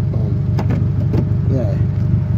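A car engine idling, a steady low drone, with a faint voice over it.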